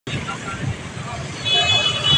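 SUVs pulling slowly away with engines running and voices around them. A vehicle horn sounds for under a second near the end.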